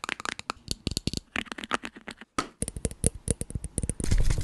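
Rapid fingernail tapping and clicking on the hard plastic cap of a Gillette shaving gel can, close to the microphone, with a short break a little over two seconds in.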